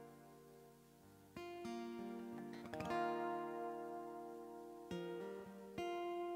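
Acoustic guitar played as soft instrumental music, without singing. Chords are strummed and left to ring, the sound nearly dies away in the first second, then a new chord comes in about every second or so.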